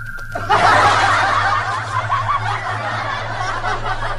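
Laughter, snickering and chuckling, starting about half a second in and continuing without a break.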